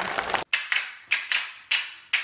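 A pair of small brass hand cymbals struck together in a quick, even rhythm, about four strikes a second, each leaving a short high ring. In the first half-second, the preceding music cuts off abruptly before the strikes begin.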